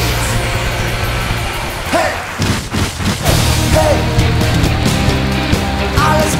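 Loud heavy rock music from a band with drums and bass guitar, with a short break about two and a half seconds in before the full band comes back in.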